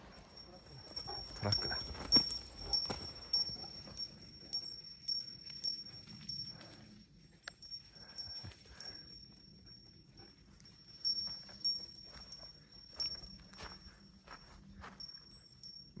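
A high, thin tinkling repeated in short pips about twice a second, mixed with scattered light footsteps and knocks.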